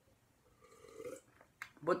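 A person drinking from a mug, with a short throaty sound from the throat about half a second in that lasts under a second, then a mouth click just before speech resumes near the end.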